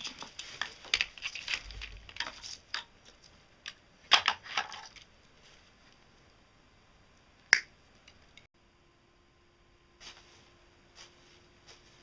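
Insulated electrical wire being pulled and untangled from a coil, rustling and scraping in two bursts, with one sharp click past the middle and a few faint ticks near the end.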